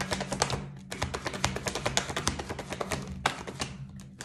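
A deck of tarot cards shuffled by hand in an overhand shuffle: a quick, irregular patter of card clicks and slaps, thick at first and sparser in the second half, over a low steady background tone.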